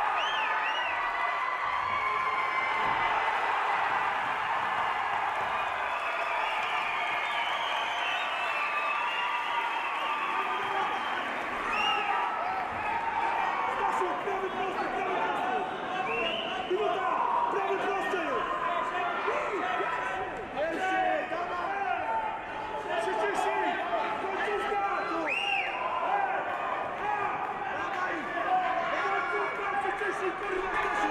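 Arena crowd talking and shouting, many voices at once, with a few sharp thuds of strikes landing.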